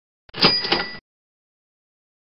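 A short slide-transition sound effect: a click, then two quick ringing hits about a third of a second apart, over in under a second. It marks the change to the next quiz question.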